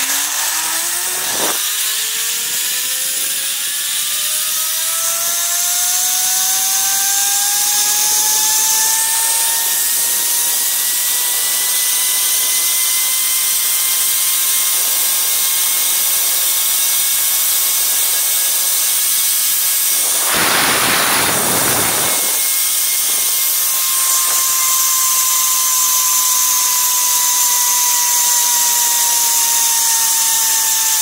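Zipline trolley's pulley wheels running along the steel cable: a whine that rises in pitch over the first ten seconds as the rider gathers speed, holds steady, then sinks slightly near the end. A constant hiss of rushing air runs under it, with a brief louder rush about twenty seconds in.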